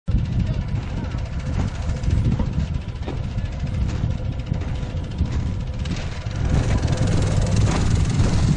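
Wind buffeting the camera microphone: an irregular low rumble that gusts up and down and grows stronger about six seconds in.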